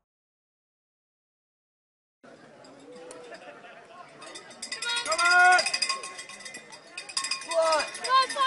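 Trackside spectators ringing cowbells and shouting, starting about two seconds in and building. There are loud shouts around the middle and again near the end.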